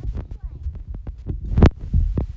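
Handling noise from a hand-held phone's microphone: a run of soft, irregular clicks and low thumps, with one sharper knock about one and a half seconds in.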